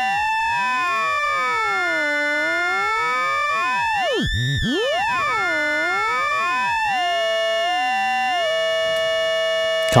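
Ring-modulated synth tones from a Fonitronik MH31 VC Modulator, with a sine-wave carrier and a triangle-like modulator from a Morphing Terrarium oscillator. As the modulator's coarse tuning is swept, clusters of inharmonic sideband tones glide up and down against each other in mirrored pairs. About eight and a half seconds in, the sweep stops and a steady inharmonic chord is held.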